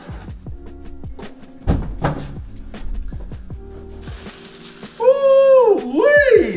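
Background music with knocks and rustles of a large cardboard box being handled and lifted off, a heavier thump about two seconds in. Near the end a loud, drawn-out high voice-like call holds its pitch, then falls.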